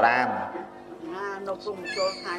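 A man's voice speaking Khmer in an animated, high and drawn-out way, loudest at the start and then quieter with wavering pitch.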